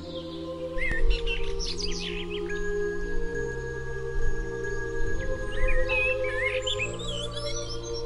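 Ambient music of slow, sustained chords that shift every second or two, with birdsong mixed over it: quick chirps come in a cluster about a second in and again past the middle.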